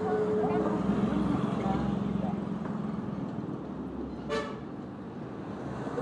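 A motor vehicle's engine running with a steady hum that fades after about three and a half seconds, then a short horn toot about four seconds in.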